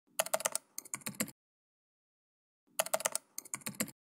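Computer-keyboard typing sound effect: two runs of quick keystroke clicks, each about a second long, with dead silence between them.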